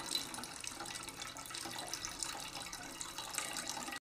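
A thin stream of water pouring onto wet, leafy bathua greens in a stainless steel bowl: a steady splashing patter with small crackles as the water hits the leaves.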